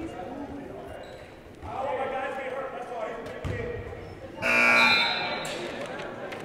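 Gym scoreboard horn sounding once, a steady buzz of about a second, calling a substitution during the dead ball after a foul. Voices and a bouncing basketball carry on around it.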